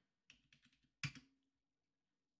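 Faint computer keyboard keystrokes: a soft tap, then a couple of quick clicks about a second in, as a number is typed into a field and entered.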